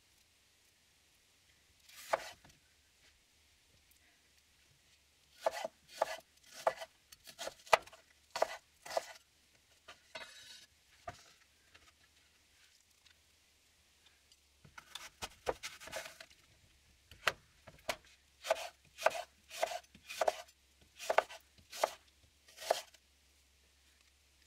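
Kitchen knife chopping fruit on a wooden cutting board: runs of sharp knocks, about two a second, with pauses between the runs.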